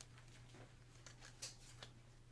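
Faint plastic scrapes and ticks of a trading card being slid into a plastic sleeve and rigid toploader, over a low steady hum. It is near silence overall, with two small scrapes about one and a half seconds in.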